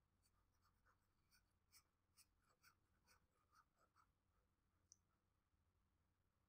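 Near silence, with faint tapping and scratching of a stylus on a drawing tablet as an arrow is drawn: about a dozen light ticks over the first four seconds, then one sharper click about five seconds in.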